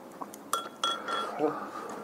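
Chopsticks clinking against ceramic tableware during a meal: two sharp clinks about a third of a second apart, each ringing briefly, with lighter scraping and tapping after.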